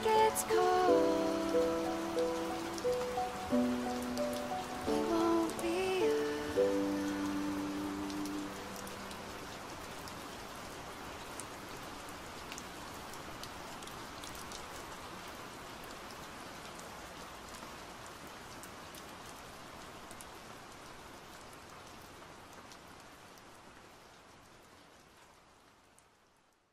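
Steady rain on a hard surface mixed under the last soft notes of an acoustic song. The music dies away about eight or nine seconds in, and the rain carries on alone, slowly fading out to silence at the very end.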